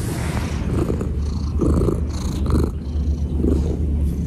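Domestic cat purring right against the microphone, a steady low rumble. Brief scratchy rubbing sounds come through in the middle.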